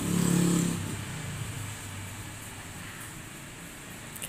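A motor engine, loudest in the first second, then fading into a steady low hum.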